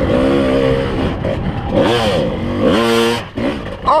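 Kawasaki KDX220 two-stroke dirt bike engine working hard up a steep rutted climb, the revs rising and falling in surges, with two sharp rises about two and three seconds in and a drop in revs near the end.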